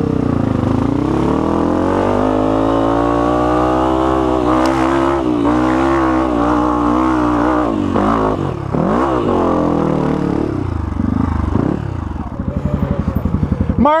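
Honda CRF250F single-cylinder four-stroke trail bike engine under throttle while riding a dirt trail and climbing a steep dirt slope. Its pitch rises over the first few seconds, holds, revs up and down about two-thirds of the way in, then drops to a slow, even chugging near the end.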